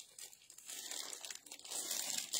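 Clear plastic garment bag crinkling and rustling as it is handled, faint and intermittent, picking up about half a second in.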